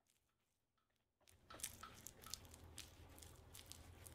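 Near silence for about the first second and a half, then faint, irregular scratching and ticking of a chip brush daubing epoxy onto rough tree bark.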